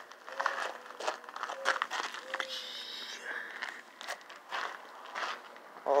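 Footsteps crunching on gravel, with scattered clicks and rustles of a handheld camera being moved. A brief high chirp comes a little before the middle.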